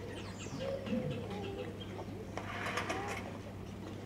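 Outdoor ambience of small birds chirping over a steady low hum, with a short burst of noise about two and a half seconds in.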